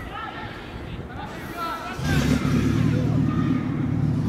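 Faint shouts of players on a football pitch, then a steady low hum that comes in about halfway through and runs on.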